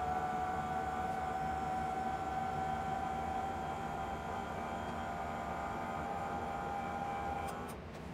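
Electric drive of the Adria Coral Plus 670 SC's lift bed running as the double bed lowers to its lowest height: a steady motor whine that stops shortly before the end.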